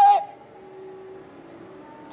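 A woman's drawn-out "ehh" filler through a handheld microphone, cutting off just after the start. A pause follows with only a faint steady background hum.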